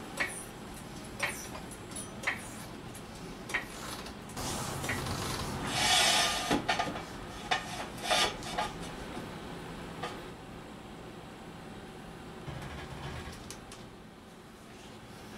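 Floor jack and steel jack stands being worked under a car on a concrete floor: a series of separate metal clicks and knocks, with a longer scraping stretch around five to six seconds in, then quieter after about ten seconds.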